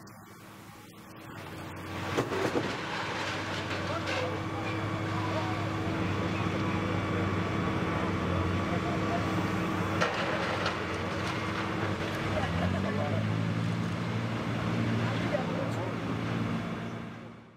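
An engine running steadily under a haze of noise, its pitch stepping up about twelve seconds in, with a few sharp clicks or knocks along the way.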